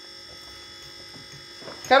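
A steady, faint electrical buzz with several fixed high tones fills a pause in a small room. Speech starts again at the very end.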